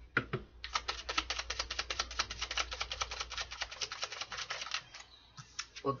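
A deck of oracle cards being shuffled by hand: a quick, even run of sharp card flicks, about nine a second, going for some four seconds before it stops.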